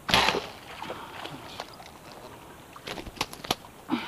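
Bowfishing compound bow shot: a sharp burst as the string is released and the line-tethered arrow flies. It is followed by a quiet stretch and a quick run of sharp clicks about three seconds in.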